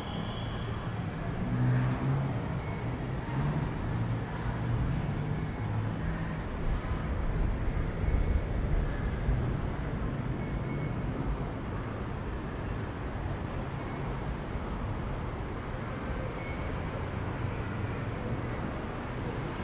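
Steady city road traffic: engines and tyres running without a break. A heavier engine rumble swells louder from about two to nine seconds in.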